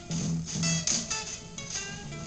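Unmixed beat playing straight from a keyboard workstation: a plucked, guitar-like melody in short notes over the drums.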